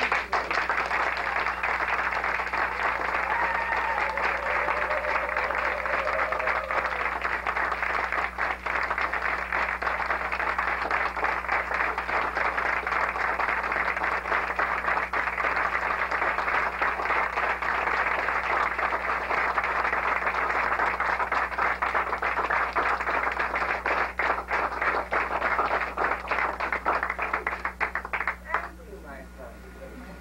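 An audience applauding, a long, dense run of clapping that cuts off suddenly near the end.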